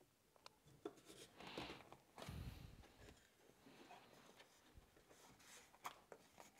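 Faint rubbing as wood glue is spread over mitred wooden box sides with a foam-tipped applicator, with a few light clicks of the wooden pieces being handled and a soft thump a little over two seconds in.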